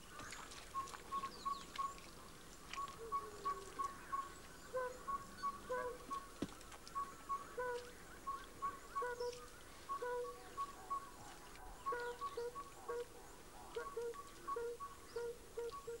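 Birds calling in the bush: runs of short repeated notes at two pitches, a higher and a lower one, go on throughout, with scattered higher chirps over them.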